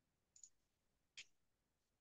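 Near silence with two faint, brief clicks about a second apart.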